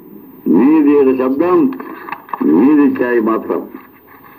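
Speech only: a man talking, in two phrases with a short pause between.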